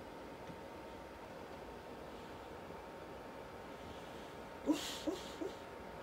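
Sleeping Great Dane dreaming, giving three short, soft woofs in its sleep close together about three-quarters of the way in; before that only a low steady background.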